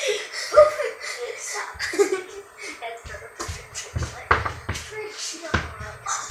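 Muffled voices and laughter, then several heavy thumps a little past the middle as a body lands and bounces on couch cushions.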